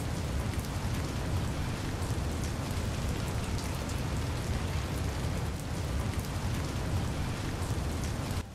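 Heavy rain sound effect: a steady hiss of rainfall over a low rumble, starting suddenly.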